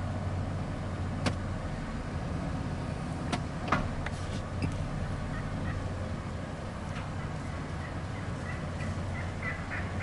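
Outdoor sound of a flock of wild turkeys with strutting gobblers: a steady low hum, a few sharp clicks in the first four seconds, and faint short repeated calls from about halfway on.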